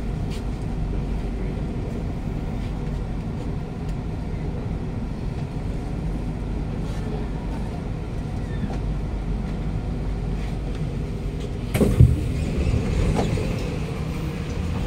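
Steady low hum inside a stationary Kawasaki–CRRC Sifang C151A MRT carriage standing at a platform. About twelve seconds in there is one sharp knock, and after it the busier noise of a station platform.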